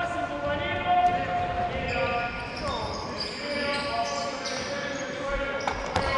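Indoor handball practice on a wooden court: sneakers squeaking in held squeals about a second long and a handball bouncing with sharp knocks, echoing through the large sports hall.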